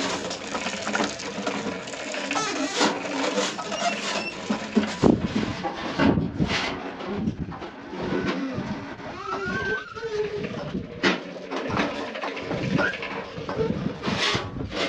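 Household clatter in a small room: a straw hand-broom swishing over rugs and a child's plastic toy balance bike rattling and rolling, in irregular knocks and rustles. A brief voice-like rising and falling sound comes about two-thirds of the way through.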